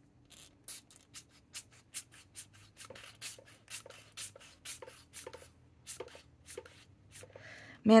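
A fountain pen tapped over and over to flick ink splatters onto paper, making short sharp clicks about three or four a second.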